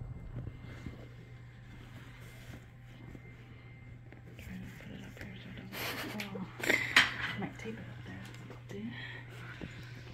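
Steady low hum, with a burst of rustling and handling noise about six to seven seconds in as the phone is moved against the leather recliner and clothing.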